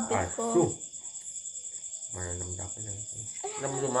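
Crickets chirping in a steady, high-pitched, rapidly pulsing trill.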